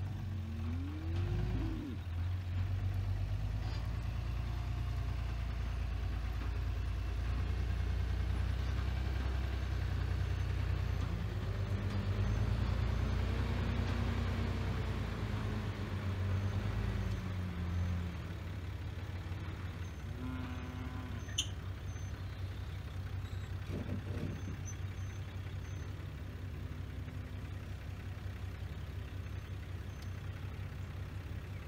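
Pickup truck engine running at low speed while backing a livestock trailer. The engine note rises and falls between about 12 and 18 seconds in, then settles quieter.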